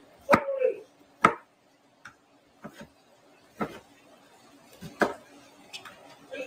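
Kitchen knife chopping a red onion on a plastic cutting board: about seven separate, unevenly spaced chops.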